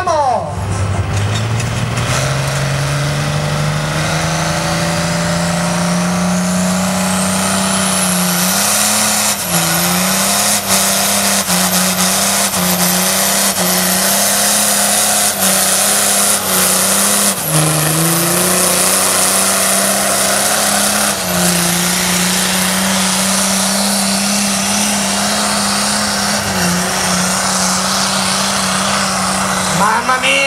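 Turbocharged diesel pulling tractor on a full pull with the weight sled. The engine revs up over the first few seconds and is held at high revs while a high turbo whistle climbs to its peak about eight seconds in. The revs dip briefly again and again as the tractor hauls the sled down the track.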